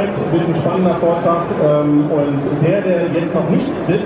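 Speech: a man talking in German into a handheld microphone.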